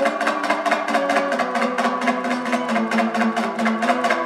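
A Kazakh dombra, a two-stringed long-necked lute, is strummed in a fast, even rhythm, playing an instrumental melody with no singing.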